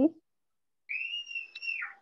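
A single high whistled tone starting about a second in and lasting about a second, holding nearly level and then gliding down at the end, with a faint click partway through.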